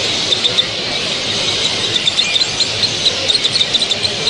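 Small cage birds chirping, many short high calls close together, over a steady background noise of the show hall.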